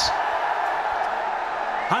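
Stadium crowd cheering and applauding a six that brings up a batter's century in a cricket Test match.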